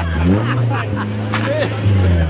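Rally car engine held at high revs, rising at first and then steady, as the car ploughs nose-first into a snowbank off the road. Spectators' voices sound over it.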